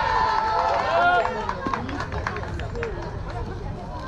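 Voices of players and spectators calling out across a baseball field, loudest in the first second and then dying down to scattered chatter, over a steady low rumble.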